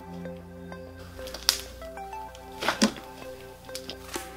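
Background music with a steady melody, over a few wet squishes and pops of glitter glue slime being stretched and pressed by hand; the loudest pops come about a second and a half in and again just before three seconds.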